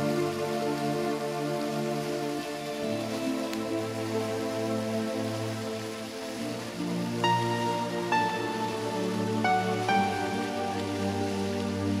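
Background music: soft, sustained chords, with a slow melody of single held notes coming in about seven seconds in.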